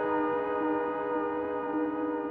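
Synthesizer score music: a sustained synth chord of several steady held tones, with no beat.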